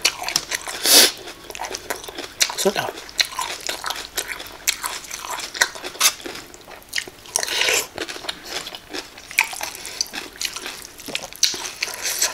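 A person chewing and biting a mouthful of pounded cucumber salad close to the microphone: irregular crunches and wet mouth clicks, with louder crunchy bursts about a second in and again past the middle.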